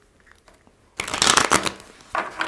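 A tarot deck (Lumiere Tarot) being shuffled by hand: quiet for about a second, then a quick burst of cards flicking against each other that lasts under a second.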